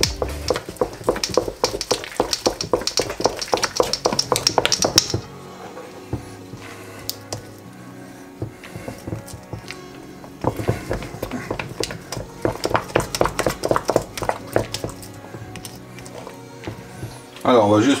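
Wooden spoon beating stiff choux pastry dough in a stainless steel bowl: rapid knocks and scrapes against the metal in two spells, with a quieter pause in between. Background music plays underneath.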